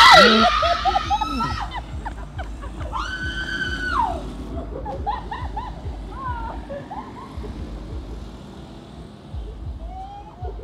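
Women screaming in fright at a sudden scare: a loud scream right at the start, then short cries and one long held scream about three seconds in, fading to scattered shouts.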